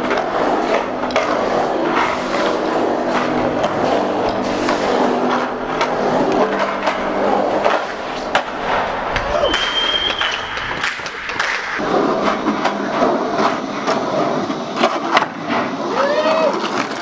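BMX bikes riding: tyres rolling, with frequent sharp knocks and clatters, and a short high squeak about ten seconds in.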